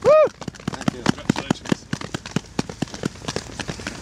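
A short voiced exclamation right at the start, then a steady run of sharp, irregular clicks, several a second.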